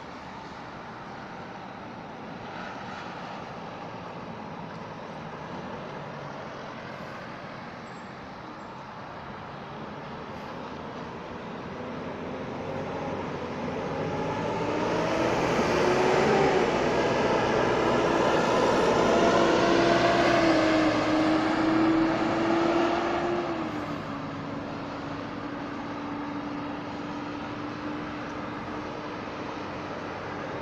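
Road traffic: vehicle engines and tyres as cars and a bus drive round a roundabout. The sound builds and peaks about halfway through as vehicles pass close, the engine pitch shifting up and down, then drops about three-quarters of the way in to a steady engine hum.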